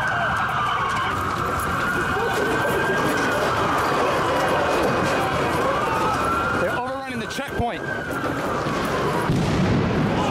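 Emergency vehicle siren wailing, its pitch rising and falling slowly, about one sweep every three seconds, over street and crowd noise. It is briefly muffled about seven seconds in.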